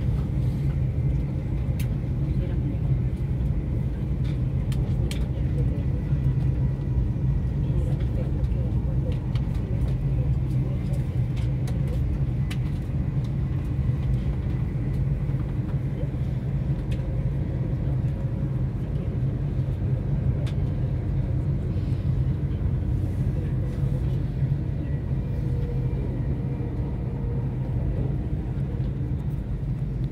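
Steady low rumble of a moving vehicle heard from inside, with faint steady tones above it and occasional light clicks.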